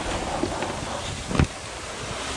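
Wind noise and rustling as a hand rummages in the plastic sheeting of a high tunnel sidewall, with one sharp knock about one and a half seconds in.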